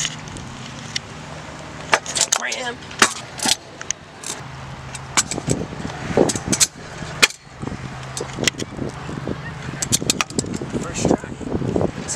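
Heavy stunt scooter with Proto wheels rolling on skatepark concrete, with a run of sharp, irregular clacks and slams as the deck and wheels hit the ground during trick attempts.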